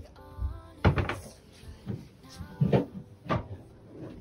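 Boat-cabin cupboard doors knocking open and shut: several sharp wooden clunks spread through a few seconds, with faint background music under them.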